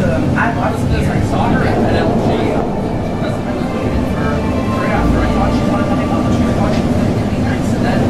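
Running noise inside a REM automated light-metro train moving along the track: a steady rumble with a faint whine, and passengers' indistinct voices under it.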